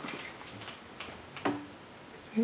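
Light clicks about every half second from the swinging wooden pendulums of a homemade harmonograph, with a louder knock about one and a half seconds in.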